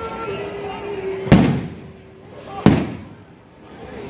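Aerial fireworks shells bursting: two loud booms about a second and a half apart, the first the louder, each fading away in an echo.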